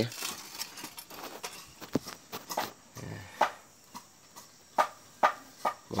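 Scattered light clicks and knocks from handling parts and moving about under a car, about eight over the span, with a short grunt a little past halfway.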